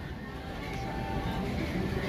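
Low restaurant room background with faint, indistinct voices in the distance and a faint held tone about a second in.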